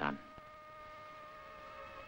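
Faint steady whine of two held tones over an even hiss: background noise on an old film soundtrack.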